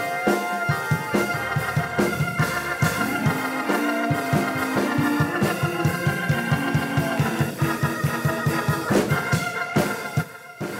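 Live worship music: an organ holding sustained chords over a fast, steady beat.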